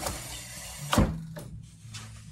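A motorcycle's front wheel, freewheeling on a paddock stand, is brought to a stop by hand, with a single dull thump about a second in and a click at the start, over a low steady hum.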